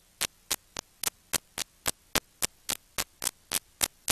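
Playback noise from a blank stretch of videotape: sharp static clicks about four times a second over a low mains hum.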